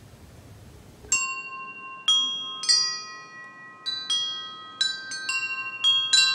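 Chimes struck one after another, about eight strikes at different pitches starting about a second in, each note ringing on and overlapping the next, after a second of faint room hiss.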